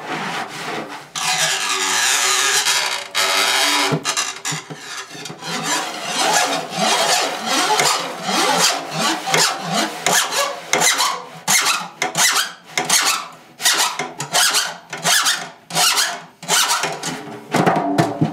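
Drumhead rubbed and scraped as free-improvised percussion: a long continuous rub for about three seconds near the start, then a quick, irregular run of short rasping scrapes of a stick across the head, some with wavering, sliding squeaks.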